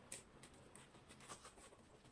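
Near silence with a few faint, brief clicks and rustles from handling a plastic water bottle and a small quilted pouch as the bottle goes inside.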